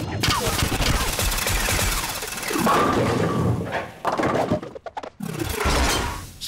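Cartoon sound effects of several ray-gun blasters firing in a rapid, continuous volley for about four seconds, followed by a couple of shorter bursts near the end.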